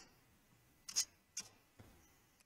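Casino chips clicking against each other as a hand picks a few up from the rack: a few short sharp clicks, the loudest about a second in.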